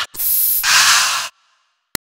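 Aerosol deodorant can spraying: a hiss of just over a second that grows fuller partway through and cuts off sharply. A single brief click follows near the end.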